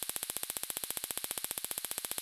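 Small spark gap Tesla coil running and sparking, with a fast, even crackling buzz of many sparks a second.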